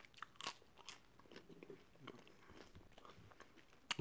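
Faint chewing of a mouthful of bread and bean stew, with a few soft clicks, the clearest about half a second in.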